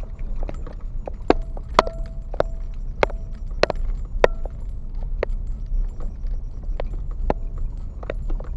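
A car rolls slowly over a rough gravel road with a steady low rumble from the tyres and engine. Irregular sharp knocks and rattles come from the car's body and loose items as it bumps along, about one or two a second, some with a short metallic ring.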